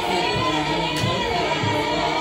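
Bulgarian folk music: a group of women's voices singing together over instruments, with a low bass line moving in short, stepped notes.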